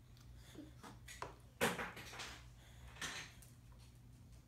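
A toddler's spoon scraping and knocking in a small bowl as he scoops food, a few short scrapes with the loudest about a second and a half in and another near the three-second mark.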